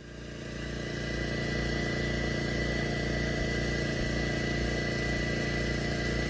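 A small engine running steadily at idle, with a thin steady high whine over its hum; it fades in over the first second.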